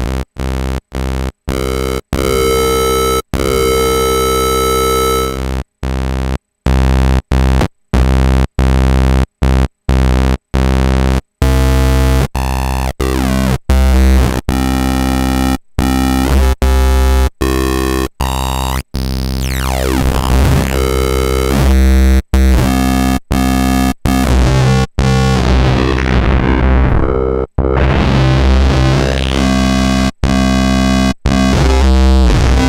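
Xfer Serum software synth playing a basic saw wave through its new Scream 1 LP filter, in many short repeated notes. The filter's cutoff and then its scream knob are turned, so the tone keeps shifting and grows gritty, with sweeping pitchy whines in the later part.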